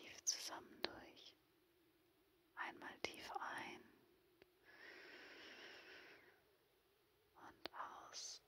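A woman whispering softly, close to the microphone, with short pauses, and about halfway through one long, even deep breath lasting nearly two seconds.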